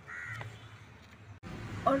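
A single short bird call, pitched and bending downward, about half a second in, over faint background hum.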